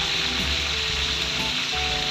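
Tapa (cured meat) deep-frying in very hot oil in a wide frying pan, a steady sizzle.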